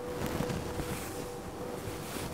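Rustling of a tussar silk sari being handled and shifted, an irregular rustle of cloth with small soft scuffs.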